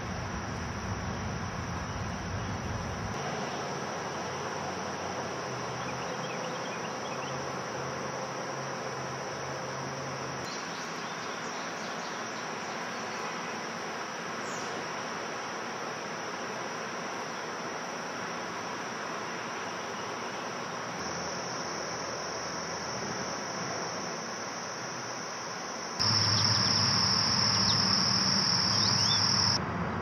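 Crickets chirring in a steady, high-pitched, unbroken trill. It turns clearly louder about four seconds before the end.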